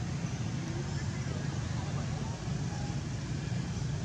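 Steady low outdoor rumble with faint, indistinct voices in the distance.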